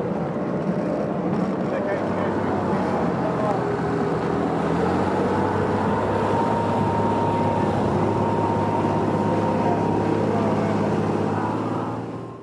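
Motorboat engine running at speed on a rigid inflatable boat, a steady drone over the rush of wind and water, with a higher whine joining about halfway through.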